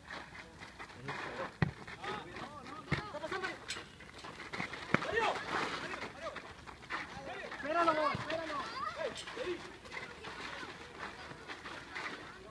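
Players shouting and calling to each other during an amateur seven-a-side football match, with a few sharp knocks of the ball being kicked.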